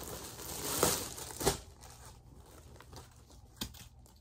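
Clear plastic garment bag crinkling and tearing as it is pulled open and a jacket slid out, loudest in the first second and a half, then fading to soft rustles with one short tick near the end.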